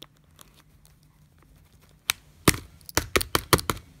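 Scratching on the outer camera on the back of a Nintendo 3DS, gouging the lens: a few faint ticks, then about halfway through a quick, loud run of a dozen or so sharp scraping strokes.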